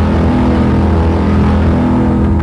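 Loud, steady low drone with several held tones over a rumble, a dramatic sound effect laid in over the scene; it cut in suddenly just before and holds without change.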